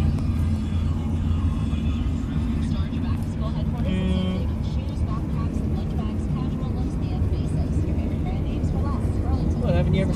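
Steady low road and engine rumble inside a moving car's cabin, with faint talk in the background.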